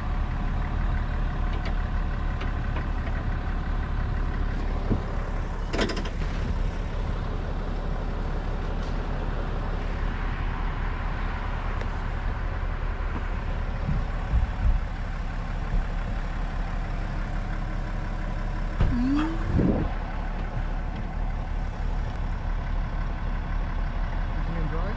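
Duramax diesel engine of a GMC Sierra pickup idling steadily.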